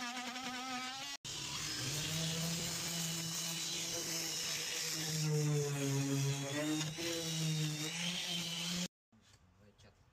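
A cordless oscillating multi-tool buzzing as it cuts into old door wood, ending abruptly about a second in. An electric sander then runs steadily on the weathered painted door frame, its hum wavering slightly, and stops shortly before the end.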